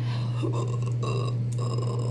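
A steady low hum throughout, with a few faint, short vocal sounds from a woman from about a second in.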